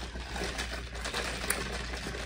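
Sipping an iced drink through a plastic straw: a continuous sucking hiss with small crackles, over a low hum.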